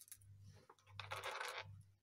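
Small handmade earrings clinking and rustling as they are picked up and handled, in one brief jingle about a second in.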